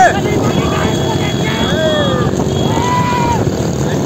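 Motorcycle engine and road and wind rumble, steady, from a bike riding alongside a cart race, with men shouting a couple of long calls over it about two and three seconds in.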